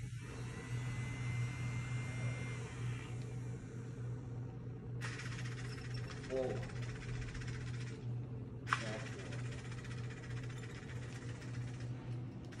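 Small DC motors of a homemade robot vacuum car running with a steady low hum, and a single sharp click about nine seconds in.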